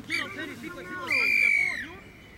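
Referee's whistle blown in one steady blast of just under a second, about a second in, dipping slightly in pitch as it ends, over faint shouting voices.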